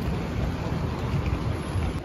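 Rumbling outdoor noise on a city street, dominated by wind buffeting the phone's microphone, with a deep, uneven rumble that rises and falls.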